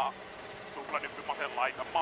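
In-car audio from a rally car on a gravel stage, mixed low: a co-driver's clipped voice comes through the intercom in short bursts over a faint, steady engine hum.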